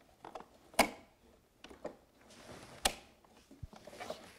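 Sharp clicks and small ticks as the LiDAR sensor pod of a Microdrones MD4-1000 is twisted clockwise into its twist-on mount. There are two loud clicks, about a second in and near three seconds in.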